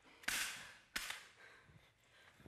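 Two sharp slaps about 0.7 s apart, the first louder and longer: a man's hand striking a woman in a staged fight.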